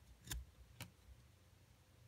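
Two short clicks about half a second apart as a thumb slides one trading card off the front of a stack of baseball cards, over near silence.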